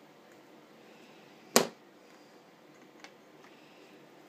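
A single sharp knock about one and a half seconds in, then a much fainter click about three seconds in, over faint steady room hiss.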